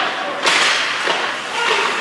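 Ice hockey play at close range: sticks and puck crack sharply twice, at the start and about half a second in, over the steady scrape of skates on the ice.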